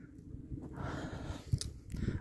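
Wind buffeting the microphone as a low, uneven rumble, with a few faint clicks near the end.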